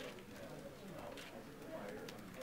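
Faint murmur of people's voices in a room, low and indistinct, with no clear words.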